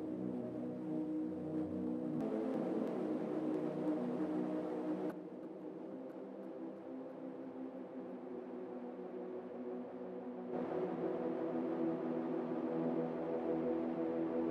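Distorted synth pad chords held and sustained, heard first dry and then through Saike's Reflectosaurus delay plugin. The sound thins and drops in level about five seconds in and fills out again about ten seconds in.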